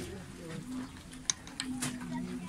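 Indistinct voices in the background, with two sharp clicks, a little over a second in and again shortly after, from a glass jar's screw-top lid being handled and taken off.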